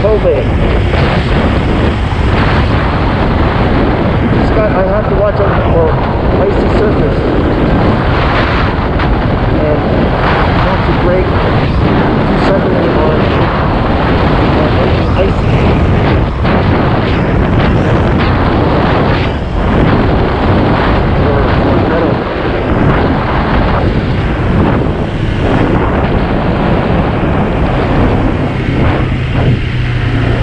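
Steady wind rushing over the microphone while riding a 2021 Honda PCX 125 scooter, with the scooter's single-cylinder engine and road noise underneath.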